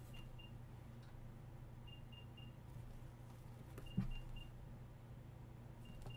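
Faint, high electronic beeps in groups of three, repeating about every two seconds: a lost wireless earbud sounding its locator alert. A light knock comes about four seconds in, over a steady low hum.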